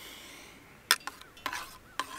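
A spoon tapping and clinking against a small camping pot while scooping soup: one sharp tap about a second in, then lighter taps.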